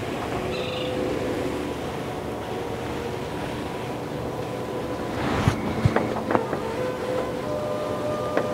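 Steady rushing background noise with faint held tones. A brief louder rush and a few light clicks come a little past halfway.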